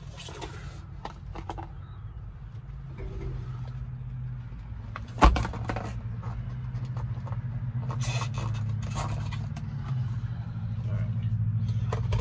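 A sharp smack about five seconds in as a red wasp is swatted against the inside of the windshield, with rustling and handling noise around it. A steady low hum runs underneath.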